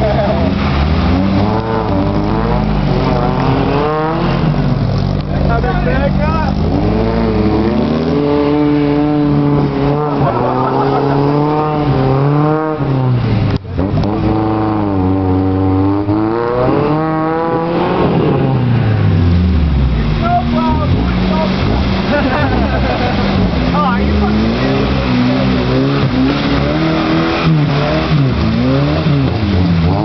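1986 Toyota 4Runner's engine revving up and down again and again as the truck drives through deep mud and water, its pitch rising and falling many times, with a brief drop about halfway through.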